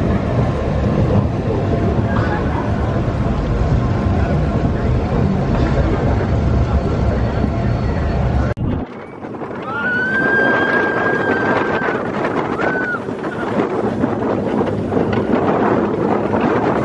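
Roller coaster ride noise: wind rushing over the microphone over the rumble of the moving motorbike-style coaster train. About halfway through, the low rumble drops away abruptly. A high note is then held for about two seconds, with a shorter one just after.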